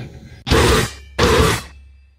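Grindcore band striking short, loud distorted hits, twice, about three-quarters of a second apart, after a brief pause.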